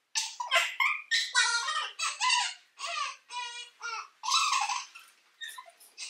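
High-pitched, squealing laughter from girls, in a run of short bursts with a few held squeals about midway.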